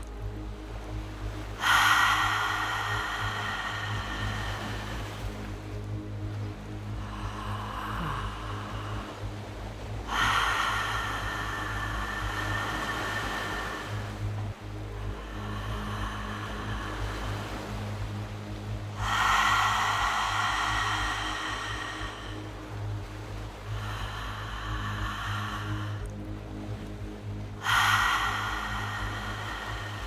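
A woman taking deep, slow breaths in and out through an open mouth, in a guided breathing exercise. Each loud breath starts suddenly and lasts about four seconds, alternating with a softer one, about one full breath every eight to nine seconds. Steady soft background music plays underneath.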